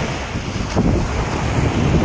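Small sea waves breaking and washing onto a sandy beach, under wind buffeting the microphone.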